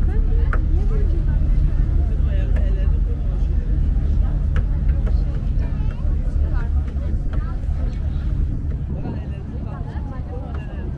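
Steady low rumble of a passenger ferry's engine, heard from the open deck, with passengers' voices chattering over it.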